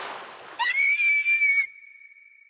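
A fading noisy wash, the tail of a loud hit just before. Then, about half a second in, a high-pitched scream sweeps up and holds for about a second. It is cut off abruptly, leaving a brief ringing echo.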